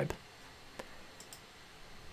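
A few faint computer mouse clicks, one at the start and a clearer one just under a second in, followed by a couple of fainter ticks, over quiet room tone.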